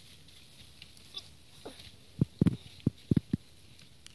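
A quick run of about six short, dull, low thumps a little past halfway through, following a quiet stretch.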